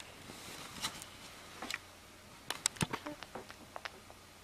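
A sleeping baby sucking on her fist: small wet sucking and smacking clicks, a few at first, then a quick cluster in the second half.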